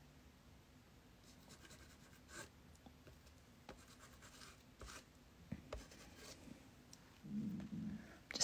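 Faint scratching and rubbing of an oil pigment stick worked across paper, in scattered short strokes. A brief low hum comes just before the end.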